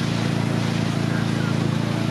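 Tow boat's inboard engine running at a steady speed, a constant low drone, with the rush of wake water and wind over it.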